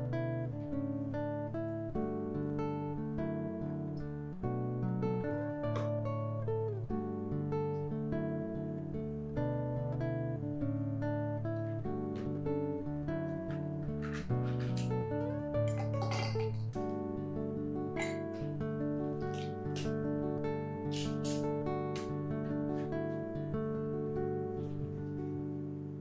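Acoustic guitar music playing steadily. In the second half, a few sharp clinks of ice cubes against a glass mug cut through the music.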